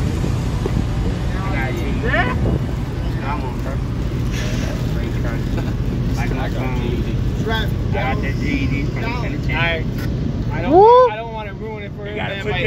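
A group of people talking and laughing in the background over a steady low rumble, with one loud rising-and-falling shout near the end.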